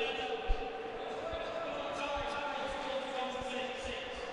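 Ice hockey rink sound: a sharp thud of the puck against the boards about half a second in, then lighter knocks of play on the ice, over a steady hum of crowd voices.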